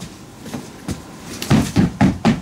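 Quick heavy footsteps stamping on a floor: a few thuds in fast succession near the end.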